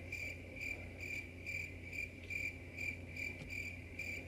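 Cricket chirping sound effect: an even, high chirp repeating about twice a second over an otherwise silent pause. This is the classic 'crickets' gag marking an awkward silence.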